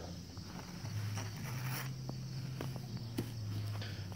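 Putty knife scraping caked grease and dirt off a wire-mesh screen in a few short strokes, over a faint steady low hum.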